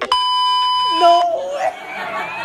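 A steady, high electronic beep lasting about a second that cuts off suddenly, followed by voices.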